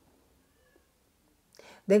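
Near silence: room tone during a pause in speech. About a second and a half in there is a short intake of breath, and speech starts right at the end.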